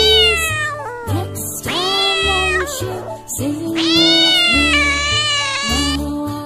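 A cat meowing: four long, drawn-out meows, each rising and then falling in pitch, over children's backing music with a steady beat.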